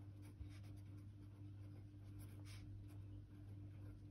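Faint scratching of a pen writing words on paper in short, separate strokes, over a low steady hum.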